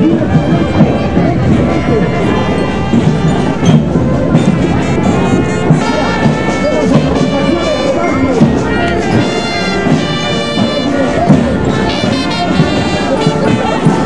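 Music led by brass instruments such as trumpets and trombones, playing steadily and loudly, with people's voices underneath.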